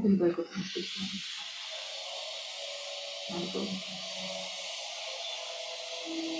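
Steady hiss of background noise on a video-call audio line. A few faint voice sounds come in the first second and again about three seconds in.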